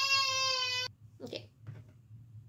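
A loud, steady buzzing tone with many overtones, held about a second and a half and cut off sharply: an edited-in sound-effect tone. Two short, soft rustling sounds follow about a second later.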